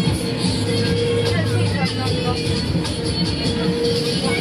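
Fairground music playing from a ride's sound system, with crowd chatter and voices mixed in.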